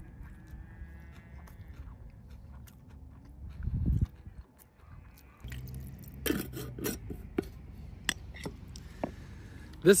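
Faint chewing of a first mouthful of food, broken by a brief low thump a little before the middle. Then a few sharp clicks and knocks from a wooden bowl being handled with a little water in it, as it is rinsed out.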